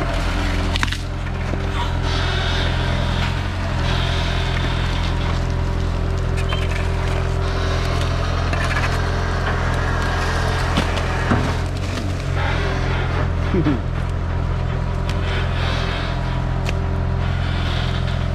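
Sumitomo S265F2 long-reach excavator's diesel engine running steadily under load as the arm swings and the bucket dumps mud. A few sharp cracks and knocks come through, the loudest about a second in and again late on.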